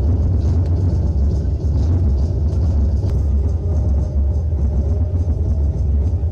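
A loud, steady low rumble with faint music underneath.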